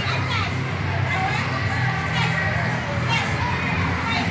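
Crowd of young schoolchildren shouting and chattering all at once during a group exercise session, a steady busy babble of high voices.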